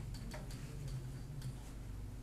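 Pen tip tapping on an interactive whiteboard while writing, a few irregular light ticks over a steady low hum.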